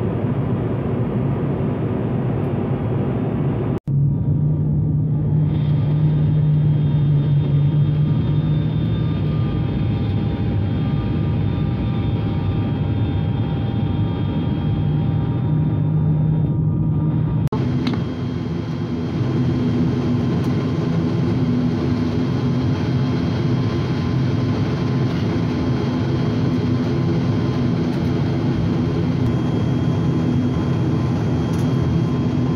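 Turboprop airliner engines and propellers heard from inside the cabin: a steady low drone with a humming tone. It changes abruptly a few seconds in and again past the middle.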